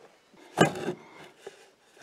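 A small rubber tool-kit pouch being handled and squeezed open, with rubbing and a knock about half a second in as the tools inside shift, then a faint click.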